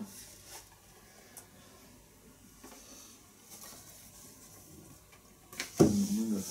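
Quiet room with faint rustling and small handling sounds, then a person coughs loudly near the end.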